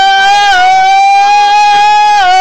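A boy singing one long, loud note at a nearly steady pitch, with a slight waver.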